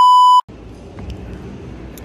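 A loud, steady test-tone beep, the bars-and-tone signal of a TV test card, cutting off suddenly about half a second in. Low background noise follows.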